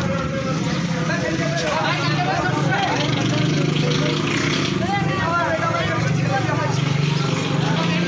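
Several men talking over one another, with a steady low hum beneath the voices.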